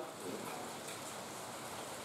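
Faint, steady hiss of rain.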